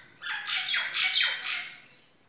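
A bird calling close by: a quick run of about seven short chirps, each falling in pitch, over about a second and a half.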